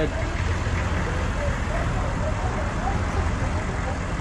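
A motor vehicle engine idling with a steady low rumble, with faint voices over it.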